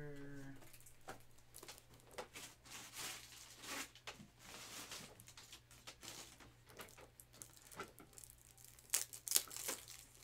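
Faint, irregular crinkling and rustling with scattered small clicks, the sound of hands handling cards and their plastic holders.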